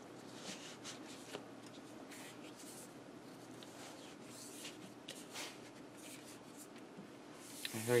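Faint rustling and light brushing as hands slide and smooth a non-slip shelf liner over a cutting mat, with a few soft ticks along the way.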